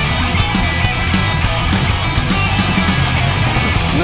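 Heavy metal band playing live and loud: distorted electric guitar riffing over bass and drums, with no vocals.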